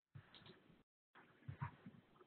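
Near silence: faint room noise from a desk microphone that cuts in and out, with a couple of soft low thumps about one and a half seconds in.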